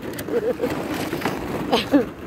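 Hollow plastic ball-pit balls clattering and rustling as several standard poodle puppies wade and dig through them in a plastic kiddie pool, with a sharper knock near the end.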